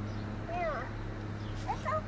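Great Dane whining softly: one short rising-and-falling whine about half a second in, and a briefer rising whine near the end.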